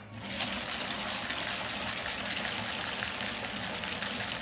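A drink-shaking machine running, its two capped cups shaking rapidly back and forth: a steady mechanical rattle with liquid sloshing inside the cups.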